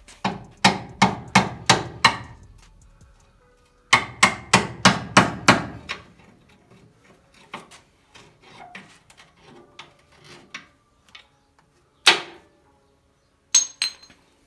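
Steel hammer striking a punch held against the front suspension of a 1962 Lincoln Continental, knocking the spindle loose from the control arms. There are two quick runs of six or seven blows, about three or four a second, then lighter taps, one more blow, and two ringing metallic clinks near the end.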